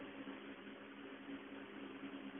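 Faint room tone: a low, steady hiss with a faint steady hum underneath.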